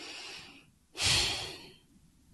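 A person breathing audibly into a close microphone: a soft breath, then a louder, deeper breath about a second in.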